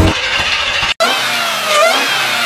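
An engine running, cut off briefly about a second in, then a supercharged V8 revving with a supercharger whine that rises in pitch and drops back near the end.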